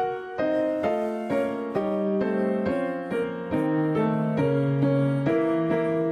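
Grand piano played slowly, a sequence of held chords moving on about every half second, with the bass line stepping down near the middle.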